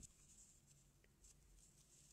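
Near silence: faint soft rustles and a few light ticks of a steel crochet hook working yarn as a stitch is made.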